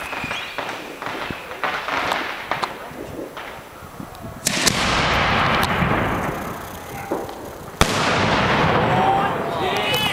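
A 4-inch aerial fireworks shell fired from a mortar tube: a sudden loud launch about four and a half seconds in that fades away, then about three seconds later the shell bursts with a sharp bang followed by a long rolling echo.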